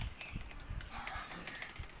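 Wire whisk beating thick flour batter in a glass bowl, with quick irregular clicks of the wires against the glass and a wet, soft scraping.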